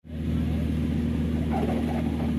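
An engine running steadily at a constant speed, a low even hum that cuts in suddenly at the start.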